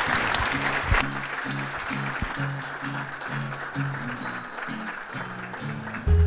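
Audience applauding, loudest at first and thinning out, over background music with plucked low notes at about two a second.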